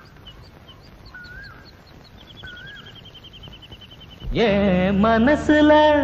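Birds chirping in a quiet lull: short high chirps, a repeated wavy call three times and a fast trill in the middle. About four seconds in, loud Indian film-song music breaks in with a gliding, reedy melody.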